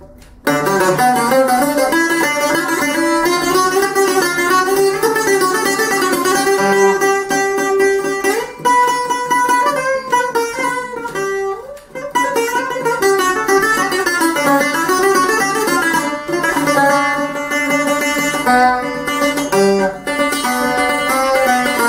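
Solo six-string Greek bouzouki with three doubled courses, picked in a running single-note melody. There is a brief gap right at the start, and playing resumes about half a second in.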